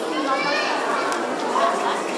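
A crowd of young children's voices chattering and calling out over one another, with adult voices mixed in.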